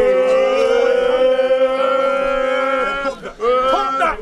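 A group of men chanting one long held note for about three seconds, then, after a brief break, starting another held note that rises as it begins.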